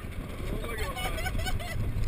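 Low rumble of a spinning Tilt-A-Whirl car and its riders, with people's voices calling out in wavering, gliding pitches from about half a second in.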